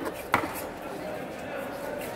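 A single chop of a large fish knife through a barracuda into a wooden chopping block, a sharp knock about a third of a second in.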